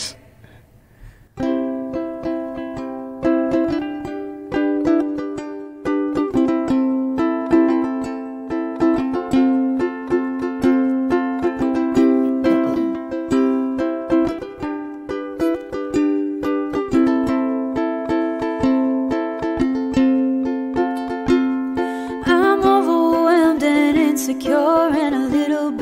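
Live solo song intro on a strummed acoustic string instrument: chords strummed in a steady rhythm, starting about a second and a half in. A woman's singing voice comes in near the end.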